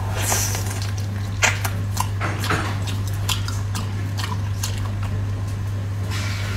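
Close-miked wet eating sounds of biting and chewing braised pork knuckle: scattered sticky smacks and clicks, with a short airy sucking noise near the start. A steady low electrical hum runs underneath.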